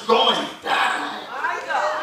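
A man preaching in three short phrases whose pitch rises and falls, in a strained delivery that is hard to make out.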